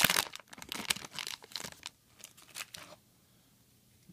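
Foil wrapper of a Yu-Gi-Oh booster pack crinkling and tearing as it is pulled open by hand. The crackling is densest in the first second and thins out to scattered crinkles, stopping about three seconds in.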